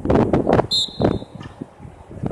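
A short, shrill referee's whistle blast about two-thirds of a second in, held for over half a second. It is set among louder rough bursts of noise before and after it.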